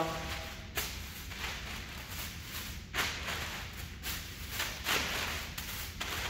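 Thin plastic shopping bags rustling and crinkling in short swishes at irregular intervals as they are tossed up and caught one-handed.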